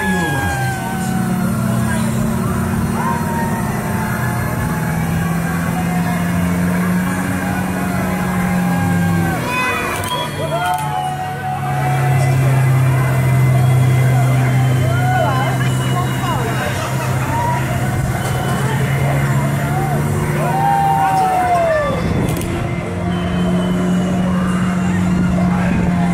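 Chair swing ride running: a steady low drive hum that drops in pitch twice and rises again near the end, under riders' whoops and squeals.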